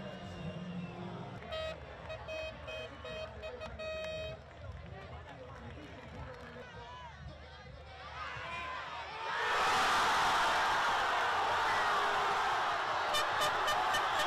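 A crowd of football fans, quiet chatter at first, suddenly breaks into loud cheering and shouting about nine seconds in, the reaction to a goal. A fast, even beat joins the cheering near the end.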